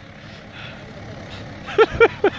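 Volkswagen Transporter van's engine running steadily, with two short shouted calls near the end.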